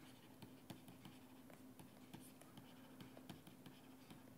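Faint scratching and tapping of a pen writing out an equation in quick short strokes, over a steady low hum.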